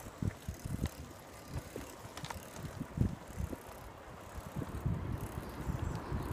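Bicycle being ridden, with irregular low thumps and a few light clicks.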